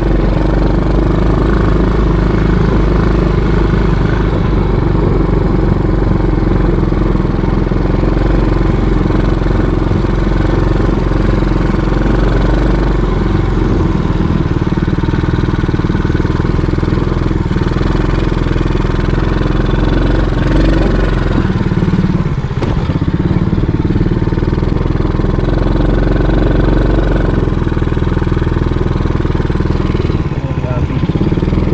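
A small ATV's engine running steadily as the quad is ridden, heard from the rider's seat. Its note changes a few times as the throttle varies.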